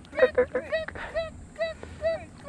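A man's voice giving a rapid run of short, high, squawky cries of 'kue!' ('eat!'), urging a fish to take a topwater lure.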